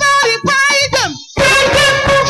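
Live gospel praise band with a woman singing lead: the band breaks into short stop-and-start hits under her voice, her line slides down in pitch, and after a brief gap the full band comes back in about a second and a half in.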